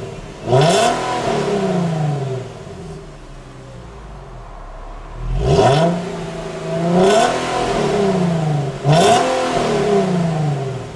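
Infiniti G37 coupe's 3.7-litre V6 revved while standing, heard from the exhaust: four quick throttle blips, each climbing in pitch and falling back. There is a few-second lull at idle between the first blip and the other three.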